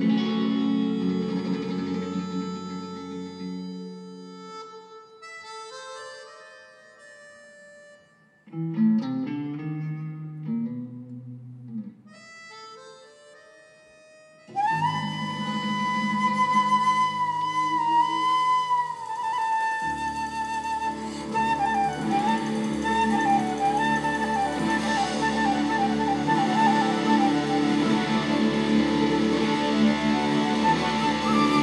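Live rock band with flute. A sustained chord rings and fades over the first several seconds, and a few quiet scattered notes follow. About halfway through, the full band comes back in loudly under a flute melody, and a deep bass joins a few seconds later.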